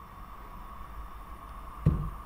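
Quiet steady hum of room tone with a thin constant tone, and one brief low thud near the end.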